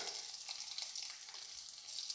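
Faint, steady sizzle of hot ghee frying whole spices, garlic, green chilli and freshly added ginger paste in a kadhai.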